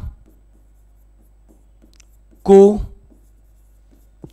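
Faint, sparse tapping and scratching of a pen writing on a smartboard screen, with one short spoken word about two and a half seconds in.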